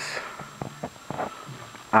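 A few faint clicks and rubbing from a plastic paintball hopper and speedfeed being turned over in the hand.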